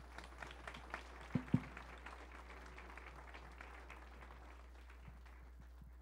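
Faint audience applause, thinning out and dying away over the first few seconds. Two sharp knocks come close together about a second and a half in.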